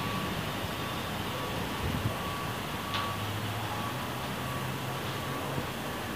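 Steady background noise picked up by an earphone microphone, with a low hum that swells from about three to five seconds in and one faint click.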